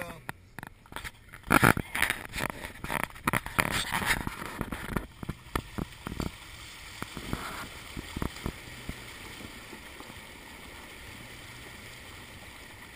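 Subaru Outback's wheels driving through a shallow river, water splashing and rushing against the tyre and body. Loud, irregular splashes for the first few seconds, then a steadier wash of water.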